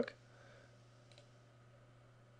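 One faint computer-mouse click a little over a second in, over a steady low hum.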